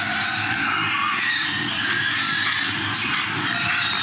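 Steady din inside a pig shed, with pigs grunting and faint high squeals over it.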